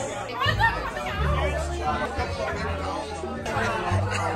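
Several people talking over each other, with background music and a steady bass line under the voices.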